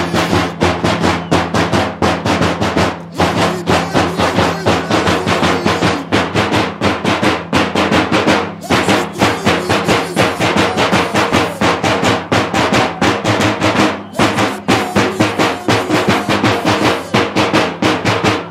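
Drums beating a fast, steady rhythm for a Romanian bear dance, the strikes coming several times a second, over a steady low tone.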